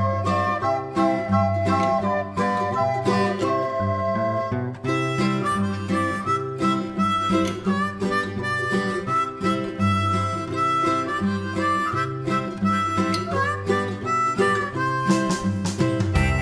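Instrumental background music with harmonica and guitar over a steady, regular beat.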